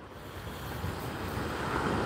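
Ocean surf on the beach mixed with wind buffeting the microphone: a steady rushing noise that swells gradually louder.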